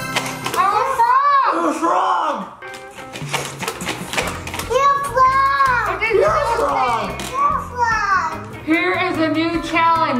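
Excited wordless exclamations and laughter from a child and adults, with pitch sweeping up and down, over background music.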